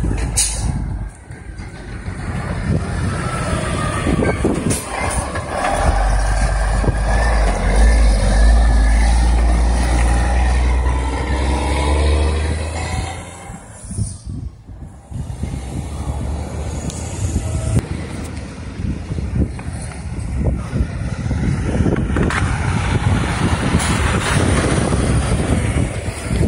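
Heavy diesel trucks driving past one after another. A deep engine rumble swells through the first half, drops away briefly about halfway through, then builds again as a box-trailer semi passes close near the end.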